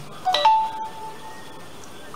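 A short two-note chime: a quick lower note, then a higher note that rings for about a second and fades away.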